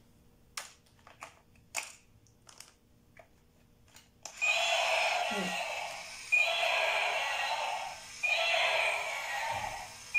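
Light-up toy dinosaur playing its recorded roar through its small speaker, three times in a row, each roar about two seconds long. Before that, a few faint plastic clicks as the toy is handled and switched on.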